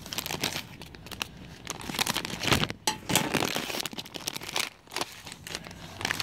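Plastic candy bag crinkling and rustling in the hands as it is worked open: a dense run of irregular crackles.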